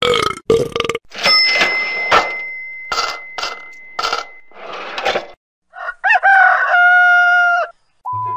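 A string of separate stock sound effects: a burp effect at the start, then a bell effect, then a short held pitched sound near the end.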